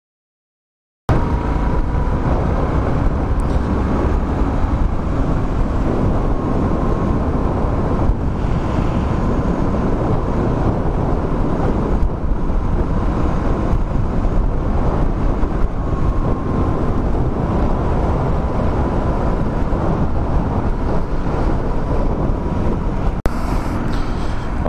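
Benelli Leoncino 800 Trail's parallel-twin engine running at a steady cruise under heavy wind noise on the microphone, starting suddenly about a second in.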